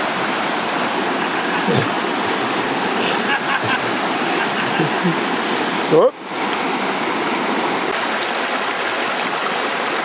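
A fast mountain river rushing steadily over stony rapids, with a brief laugh about two seconds in.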